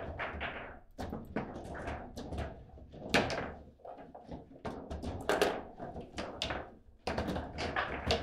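Table football in play: the hard ball struck by the plastic figures and knocking against the rods and table walls, a string of sharp knocks and clacks at uneven intervals, busiest near the end.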